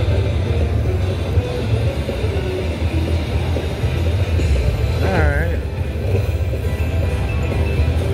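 Spin It Grand slot machine playing its free-game music and reel-spin sounds over a steady low rumble, with a short voice-like call about five seconds in.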